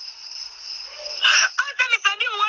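A pause in a recorded conversation, filled by a steady high-pitched background whine like insects chirring. A voice cuts back in loudly about a second and a quarter in, and speech carries on.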